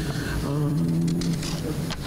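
A man's voice holding one long, nearly level hesitation sound, like a drawn-out "uh", for about a second between words.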